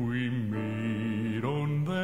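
A male gospel vocal quartet singing long held chords in close harmony without words. The chord shifts about one and a half seconds in.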